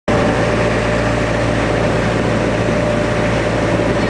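A river tour boat's engine running at a steady drone, a constant low hum with a held tone above it.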